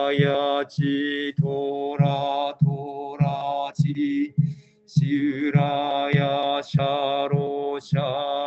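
Buddhist sutra chanting in a steady, even monotone, one syllable to each sharp beat of a mokugyo (wooden fish drum), about one and a half beats a second. There is a short break for breath about four seconds in.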